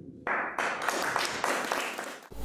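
Audience applauding, starting suddenly just after the start and fading away near the end.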